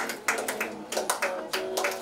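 Rhythmic hand clapping, about three or four claps a second, with voices singing along in a devotional aarti.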